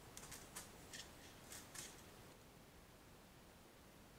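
Faint, quick scratching and clicking, about six scrapes in the first two seconds: a mouse pushing through the metal squeeze flaps of a fruit-jar lid mousetrap, its claws on the metal and glass.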